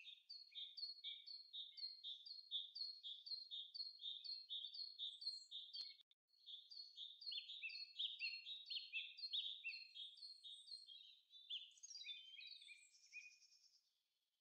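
Birds chirping: a faint, fast series of short, high, downward-sliding notes, about three a second. It breaks off briefly about six seconds in and stops just before the end.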